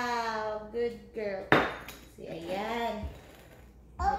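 A small bowl is set down hard with a single sharp clatter about one and a half seconds in, after a drawn-out vocal 'oh' fades out. A brief voice sound follows the clatter.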